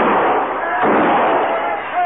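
Radio-drama sound effect of two six-gun shots about a second apart, over raised men's voices.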